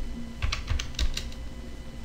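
Typing on a computer keyboard: a short run of separate, irregular keystroke clicks.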